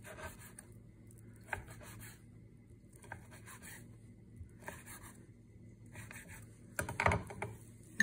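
Chef's knife slicing through a salami stick onto a wooden cutting board: soft, repeated scraping cuts, about one to two a second. A louder knock and scrape about seven seconds in.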